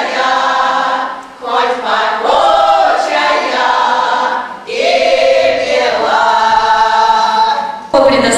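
Small ensemble of women singing a folk song together in long held phrases, with short breaks between phrases about a second and a half in and just before five seconds in.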